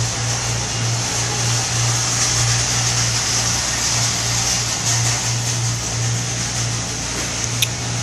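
Steady low hum with a hiss over it: indoor store background noise picked up by a phone microphone, with a small click near the end.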